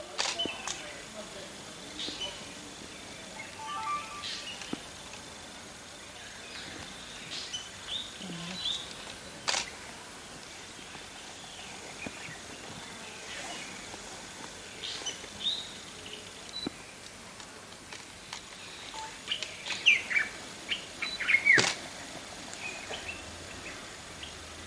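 Birds chirping in short, scattered calls, with a cluster of quick chirps near the end, over faint steady high tones. A few sharp clicks stand out.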